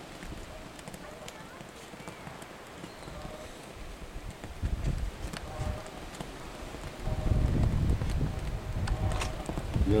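Faint voices of people talking in the distance, with low rumbling from wind on the microphone that grows stronger in the second half.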